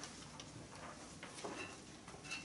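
Faint, scattered clicks and small handling noises, with a short faint squeak about one and a half seconds in.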